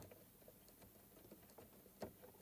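Near silence, with a few faint scattered clicks of fingers turning the thumbscrew that holds a walking foot onto a sewing machine's presser bar.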